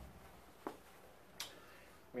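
Near silence broken by two faint clicks about three-quarters of a second apart: handling noise from a clip-on lavalier microphone and its cable being fitted.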